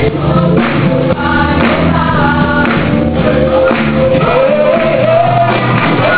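A choir singing a gospel worship song in Portuguese over musical accompaniment, with sustained bass notes and a beat about once a second.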